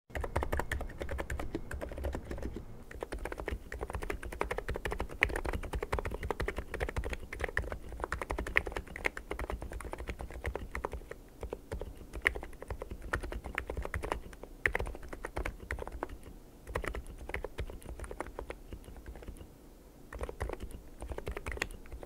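Custom mechanical keyboard with dye-sublimated PBT keycaps being typed on steadily, a dense run of keystrokes with a deep "thock" character. The typing eases off briefly near the end, then picks up again.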